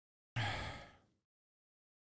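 A man sighing into a close microphone: one short breath, sudden at the start and fading out within about a second.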